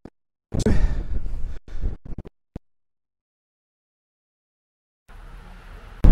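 DJI wireless mic feed breaking up. About two seconds of wind noise on the microphone are chopped by abrupt cut-offs and clicks, then dead silence for a few seconds, with faint hiss returning near the end. The wireless signal is dropping out as the wearer walks away with his back to the camera.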